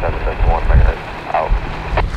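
A Coast Guard safety broadcast over a VHF marine radio: a man's voice, thin and narrow as through a radio speaker, reads out a number and stops about a second and a half in. Wind rumbles on the microphone throughout.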